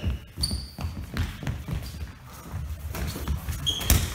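Foam balls thudding and bouncing and players' feet moving on a sports-hall floor, with a few brief sneaker squeaks and one sharp smack just before the end.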